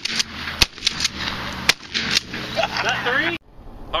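A string of gunshots, three loud sharp reports and some fainter ones, spaced roughly half a second to a second apart over a steady rushing noise, with a man's voice near the end. It all cuts off abruptly about three and a half seconds in.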